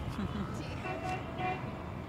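Distant city street traffic: a low steady rumble with two short car-horn toots, the first about a second in and the second about half a second later.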